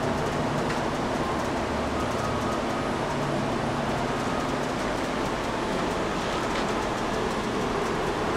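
Amera Seiki MC-1624 CNC vertical machining center homing its X and Y axes: steady running noise of the axis drives moving the table, with no knocks or clunks.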